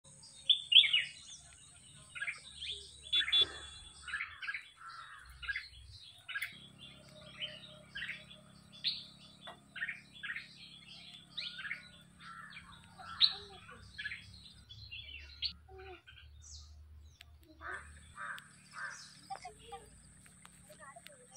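Birds chirping and calling, many short quick notes one after another with no pause, over a thin steady high-pitched whine. A faint low hum runs beneath through the middle.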